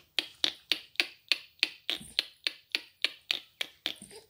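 A person making a rapid run of sharp, evenly spaced clicks, about four a second, that stops near the end.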